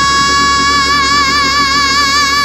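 A female gospel singer holds one long high note, steady at first and then with vibrato from about a second in. Under it are sustained organ chords.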